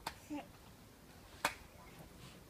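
A baby's hand slapping a man's bare thigh: two sharp slaps about a second and a half apart, the second the louder, with a brief baby sound just after the first.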